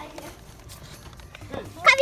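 A child's short, loud, high-pitched squeal near the end, over low party chatter.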